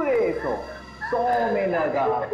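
A woman whimpering and crying in fear, in two drawn-out wavering cries, the second starting about a second in.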